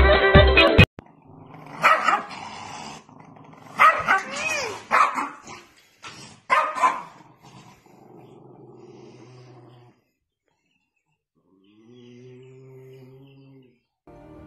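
Music cuts off abruptly just under a second in, then a dog barks and growls in several short bursts. A faint, steady low hum follows near the end.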